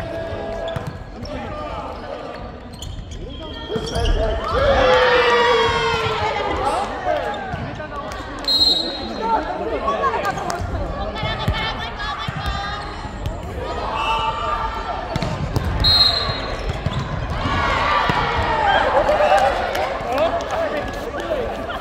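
Several people talking and calling out, echoing in a large sports hall, with scattered thuds on the wooden court floor and two brief high squeaks.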